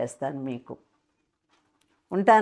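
A woman speaking for under a second, then a pause with only faint room tone and a low steady hum.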